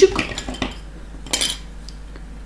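Small metal cutters trimming the end of the beading line: a few faint metallic clicks, then one sharp snip about one and a half seconds in.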